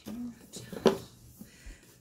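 A brief soft bit of speech, then a single sharp knock a little under a second in as a cardboard box is handled and lifted.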